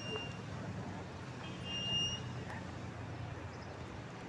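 Street traffic: a vehicle engine running close by as a steady low hum, with a short high-pitched electronic beep about two seconds in.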